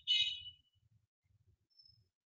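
A short, high-pitched chirp at the start that fades within about half a second, then a faint, brief high tone near the end.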